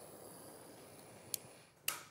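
Quiet room tone with a faint steady hiss, broken by a small sharp click about one and a half seconds in and a louder short click just before the end.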